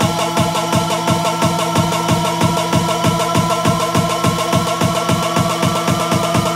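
Hardstyle electronic dance track in a build-up: fast, even drum hits, about five a second, under a synth tone that rises slowly in pitch.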